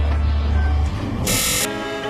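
Music transition between tracks: a deep bass note holds for about the first second, then a short burst of hiss about a second and a half in cuts off suddenly as sustained string chords come in.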